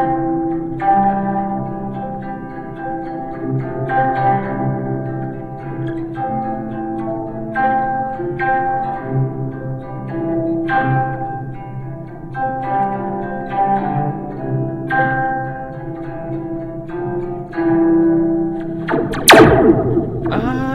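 Nylon-string classical guitar fingerpicked in single notes and arpeggios, heard through a Slinky toy spring that works as a homemade spring reverb, so each note rings with a metallic, reverberant tail. Near the end a loud sharp hit sets the spring off in a swooping, laser-like sweep.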